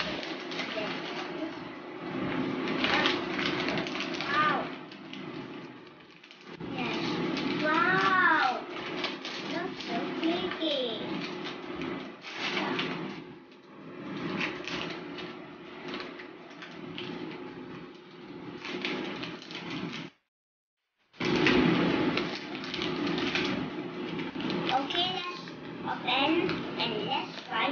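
Plastic snack packaging crinkling and rustling as a bag of mochi sweets is handled and torn open, with a few short wordless vocal sounds from a child. The sound cuts out briefly about three-quarters of the way through.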